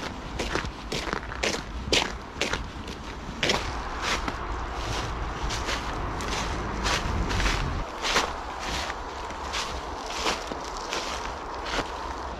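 Footsteps of a person walking on snowy, frosty ground, about two steps a second, with a low rumble underneath that swells about seven seconds in.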